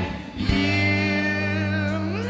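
Live rock band music: after a brief drop in level, the band holds a sustained, ringing chord with guitar prominent.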